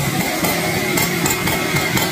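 Husqvarna 365 two-stroke chainsaw running under load, its chain cutting into the wood of a large rain tree trunk.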